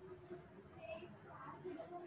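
Faint, indistinct speech in the background over quiet room tone.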